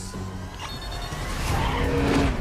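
Armoured truck speeding and swerving through a city street in a film chase sound mix, tyres skidding, growing louder toward the end.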